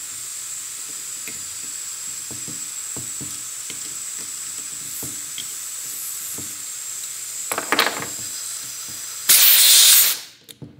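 Steady hiss of compressed air escaping from a pressurised pneumatic rack-and-pinion actuator, with small metallic clicks of a wrench and hex key on its stop bolts. A couple of brief louder spurts come just before a loud blast of air near the end, as the air hose is pulled off its quick coupler and the actuator vents.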